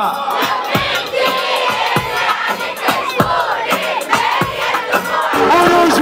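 A live crowd shouting and singing along with a rapper over a loud beat played through a PA, with a deep kick thump roughly every second.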